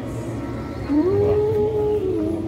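Music: a long held note that slides up about a second in and holds, over a low rumble.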